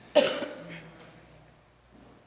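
A person coughing once, hard and sudden, the cough trailing off over about half a second.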